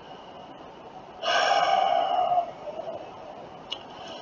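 A man sighs once, a breathy exhale lasting about a second, close to the microphone.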